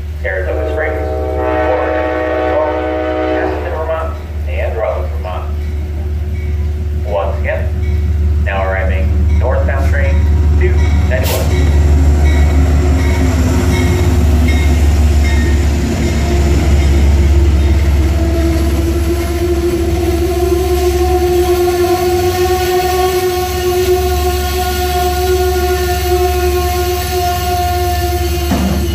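Amtrak passenger train led by a GE P32AC-DM diesel locomotive arriving at a station. The horn sounds for about three seconds near the start, then the engine and the rolling cars keep up a steady low rumble as the train passes slowly. A steady droning tone grows stronger in the second half.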